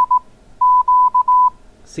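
Morse code (CW) tone at a steady pitch, keyed in dits and dahs while calling CQ. It sends the tail of a C, then after a short gap a full Q (dah-dah-dit-dah).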